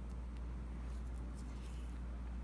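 Steady low hum with faint small clicks and rustles of glass seed beads and thread as a beading needle is worked through the beadwork.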